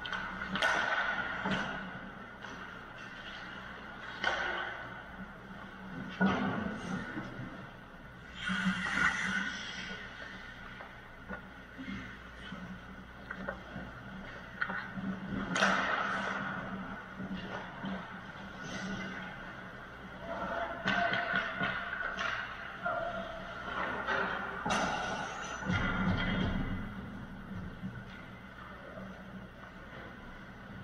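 Ice hockey play in an indoor rink: skate blades scraping and hissing across the ice, with sharp knocks of sticks, puck and boards scattered throughout.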